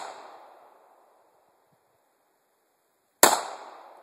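9mm pistol fired once about three seconds in, a sharp report dying away over most of a second; the fading tail of the previous shot is heard at the start.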